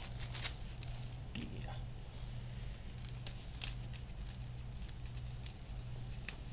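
Soft rustling and scattered light clicks as a harness and collar are handled and fastened on a small dog, over a steady low hum.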